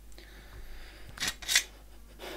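Steel sword pommel being worked off a threaded tang, metal rubbing on metal: faint scraping, then two short, sharp metallic scrapes a little over a second in, the second the louder.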